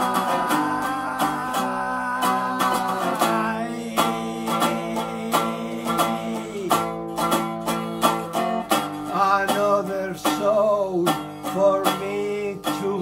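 Resonator guitar strummed in a steady rhythm, with a twangy metallic tone, while a man sings over it, holding long notes.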